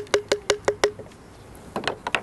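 Small wooden spoon knocking against the Chufamix filter cup: six quick, even taps in under a second, each with a short ring, then a few softer clicks near the end.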